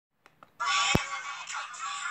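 A sung track played back from a laptop's speakers at altered speed, so the singing sounds synthetic, starting about half a second in after two faint clicks. A sharp click comes just before the one-second mark.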